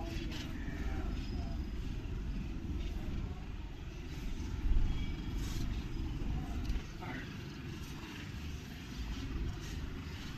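Outdoor background of a group of people walking: scattered, indistinct voices over a steady low rumble, with a brief louder noise about halfway through.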